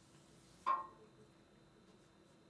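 A single short clink with a brief ring, about two-thirds of a second in: an art tool knocking against the pot of coloured pencils on the table. Otherwise quiet room tone.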